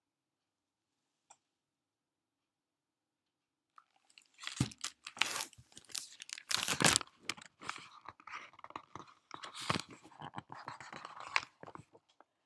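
Close handling noise, a dense crackling, crunching rustle with sharp knocks, starting about four seconds in and running for some eight seconds as the recording device is picked up and moved about. A single small click about a second in.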